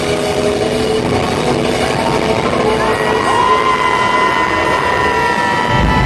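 Lull in a loud live rock set: crowd cheering and yelling under a sustained ringing electric-guitar tone that holds from about halfway and bends down at the end. Near the end the full band with drums comes back in.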